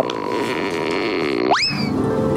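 Comic sound-effect stinger: a held electronic tone for about a second and a half, then a quick rising swoop in pitch that eases down slightly at the top.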